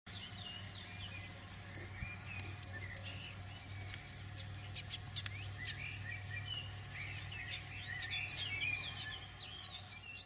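Birdsong: one bird repeats a short, high chirp about twice a second in two runs, one near the start and one near the end, while other birds call in between. A low steady hum lies underneath.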